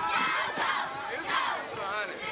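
A football crowd shouting, with many voices yelling over each other at once.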